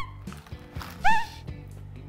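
Background music with two short, loud swooping whistle-like sound effects, each rising quickly in pitch and then holding: one right at the start and one about a second in.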